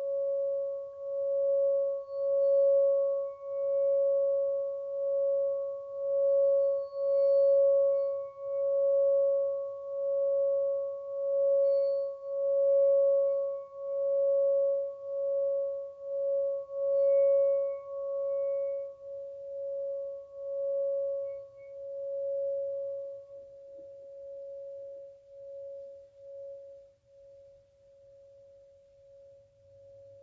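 Singing bowl sung by circling its rim with a wooden striker. It gives one steady hum with a fainter higher overtone, swelling and ebbing about once a second. Over the last third the sound fades away.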